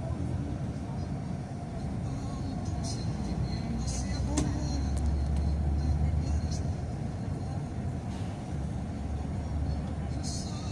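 Road noise from a moving motor vehicle: a steady low rumble of engine and tyres, swelling louder for a few seconds in the middle.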